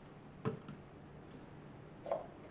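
Quiet room tone with a faint steady low hum, broken once about half a second in by a brief sharp sound.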